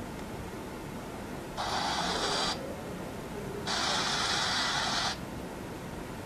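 Smartphone loudspeaker playing a video's soundtrack in two short stretches, about a second and a second and a half long, heard as a flat hiss that starts and cuts off abruptly each time: playback started and paused by touching the fingerprint reader.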